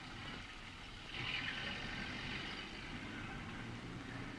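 Faint, steady street noise of traffic, with a slight swell of hiss about a second in.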